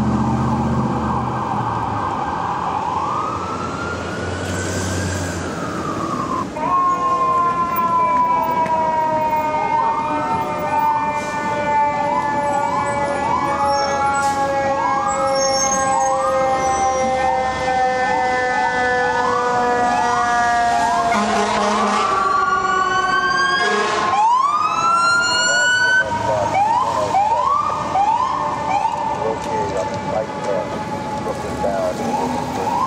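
Fire truck sirens. A deep mechanical siren slowly winds down in pitch under a repeating, quicker electronic siren sweep, then is spun back up to a high pitch near the end. Before that, a siren glides slowly up and down over engine rumble.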